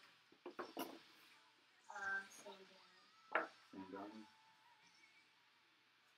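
Quiet handling of a small cardboard card box as it is shaken and its lid opened: a few light clicks and taps, the sharpest about three and a half seconds in. Brief, quiet speech is heard between them.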